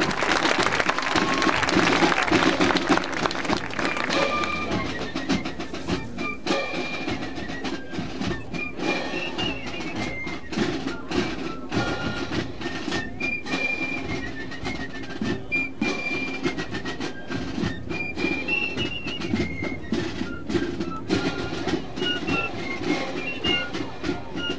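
Marching band of brass, woodwinds and drums playing: a steady held chord underneath and a high melody of short stepping notes above it. It is louder for the first few seconds, then plays on more softly.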